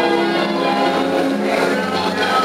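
An accordion playing tango music, sustained chords under held melody notes.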